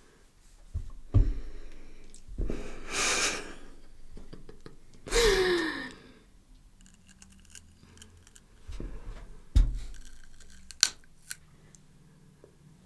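Close-miked biting of a raw garlic clove, with crisp crunches and clicks, and two loud breathy bursts in the middle, the second ending in a falling groan as the garlic's sting hits.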